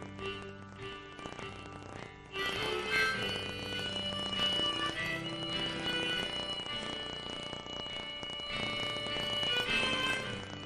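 Instrumental break in a live folk song: guitar accompaniment under a held high melody line. It is quieter at first and comes in louder about two seconds in.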